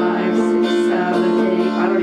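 Electric guitar strummed steadily on a ringing A major seventh barre chord.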